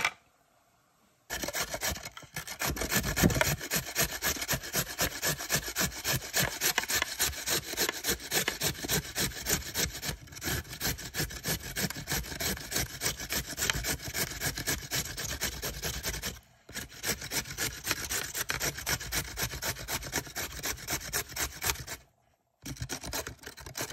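A carrot being grated on a stainless steel grater: fast, steady rasping strokes that start about a second in, with one brief pause about three-quarters of the way through.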